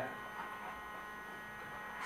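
Faint, steady electrical hum with several thin, high, even tones from the Herrmann ozone generator and its ozone analyzer running continuously at a stable 70 µg concentration.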